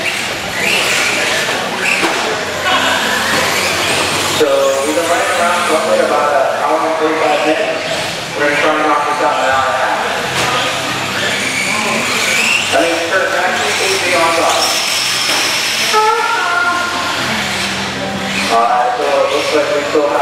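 Indistinct voices of people talking in a large indoor hall, over the whine of radio-controlled race cars' motors rising and falling as they run the dirt track.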